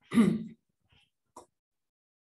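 A man clears his throat once, briefly. A faint click follows about a second and a half in.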